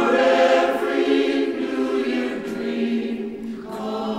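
Choir singing a Christmas song as a soundtrack, holding long, steady chords.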